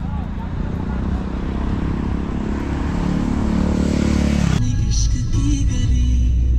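Roadside traffic noise with a low rumble from a passing vehicle, growing louder, cut off abruptly about four and a half seconds in and replaced by background music.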